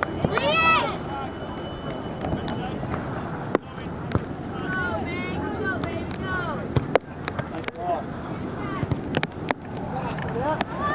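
Outdoor sideline sound of a girls' soccer match: a high-pitched shout about half a second in, then scattered distant voices calling out over a steady background hiss, with many short sharp knocks throughout.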